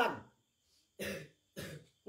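A man's voice trailing off at the end of a chanted phrase, then after a short pause two brief throat clearings, the first about a second in and the second near the end.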